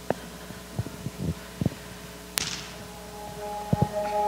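Handheld microphone handling noise: several soft thumps and one sharp click. Near the end, the sustained tones of a backing track begin faintly.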